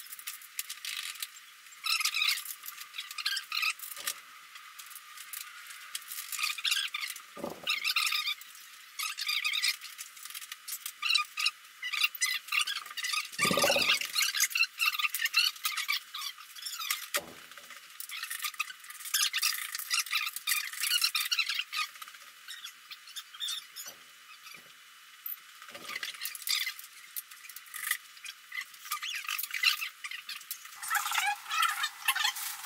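Squeaks and scrapes of hardware as casters and legs are fitted to the base of a sleeper sofa, broken by a few short knocks, the loudest about halfway through.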